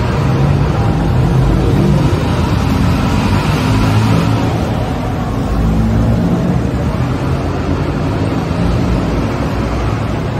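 Busy city street ambience: a steady rumble of road traffic mixed with the general noise of a crowd of pedestrians.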